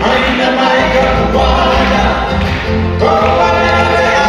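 A live band playing a Hawaiian song, with acoustic guitars and keyboard under sung vocals; a new sung phrase begins about three seconds in.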